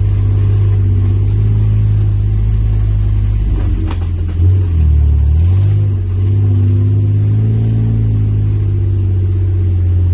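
Jeep engine droning steadily at low speed on a rocky dirt trail, heard from inside the open cab. About halfway through, the engine note dips lower for about a second, then comes back up.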